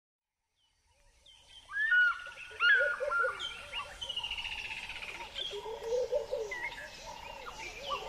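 A chorus of several wild birds chirping, whistling and trilling together, fading in from silence about a second in.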